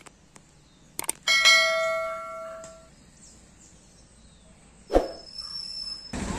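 Subscribe-button sound effect: mouse clicks, then a notification bell ringing once and fading out over about a second and a half. A single thud near the end.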